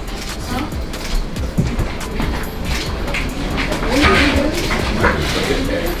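Background music mixed with excited voices and shouts, growing louder about four seconds in.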